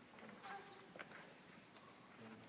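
Near silence: quiet room tone with a faint brief sound about half a second in and a faint click about a second in.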